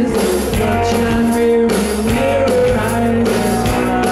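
Live rock band playing: electric guitar, bass and drums, with a man singing long held notes over a steady beat.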